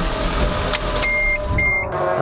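Car engine running, heard from inside the car, with two short high-pitched beeps about a second in and again near the end.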